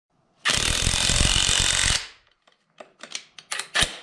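Half-inch cordless brushless impact wrench hammering in one burst of about a second and a half, then several separate sharp clicks and knocks.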